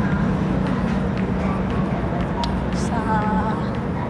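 Busy supermarket ambience: indistinct voices of other shoppers over a steady low rumble, with a few light clicks.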